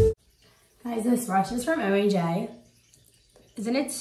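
A woman talking to the camera in two short phrases with a pause between them, just after guitar background music cuts off.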